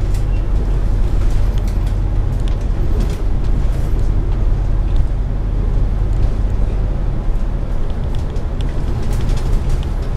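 Inside a Volvo B9TL double-decker bus on the move: a steady low engine drone mixed with road noise, with light rattles and ticks from the bodywork.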